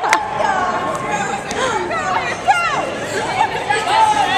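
Several people talking and calling out over each other in unclear chatter, with one sharp knock just after the start.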